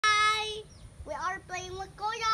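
A young child's high voice singing out drawn-out notes: one held note at the start, then a short rising cry and another held note.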